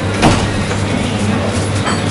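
Bar room noise: a steady low hum with a sharp click about a quarter second in and a fainter one near the end.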